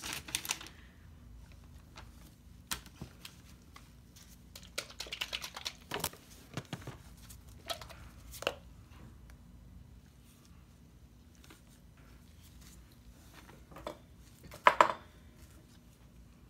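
Scattered small clicks and rustles of plastic squeeze bottles of acrylic paint being handled and put down on a paper-covered work table, with a louder short knock near the end.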